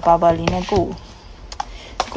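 A voice speaking for about the first second, then a few light clicks, typical of hard resin or plastic pieces being handled.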